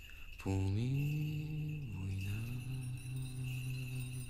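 A low male voice chanting long held notes in a slow church chant. It enters with an upward slide, holds, drops to a lower note about halfway through, and sustains it.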